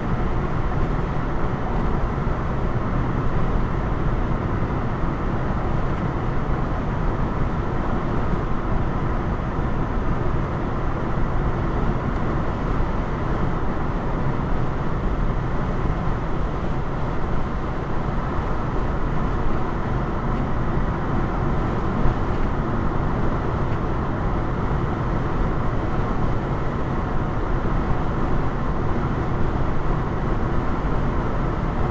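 Steady road and tyre noise of a car cruising at about 65 mph, heard from inside the cabin.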